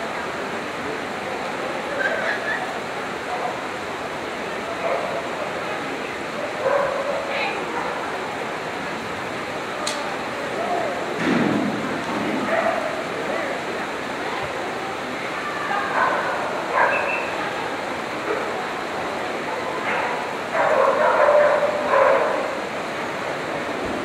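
A dog barking and yipping in short, scattered outbursts while it runs, over steady background noise.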